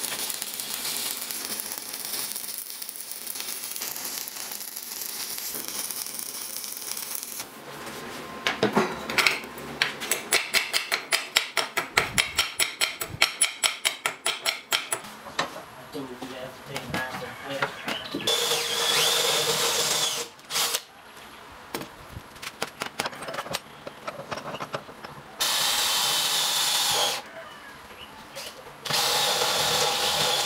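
Stick-welding arc crackling steadily for about seven seconds, then a quick run of sharp knocks. In the second half, a cordless drill runs in three bursts, boring into a round steel piece held in a vise.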